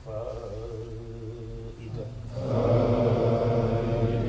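Male chanting of Arabic devotional verses in long held notes, a quieter phrase that swells louder about two seconds in.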